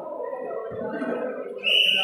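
Voices and game noise echoing under the covered basketball court's metal roof, with a couple of dull thuds. About a second and a half in, a loud, shrill, steady high tone starts and holds.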